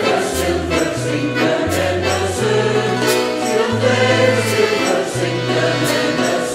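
Mixed choir singing with a small folk band: an accordion and a strummed mandolin-type instrument, with low bass notes stepping to a new pitch about every second.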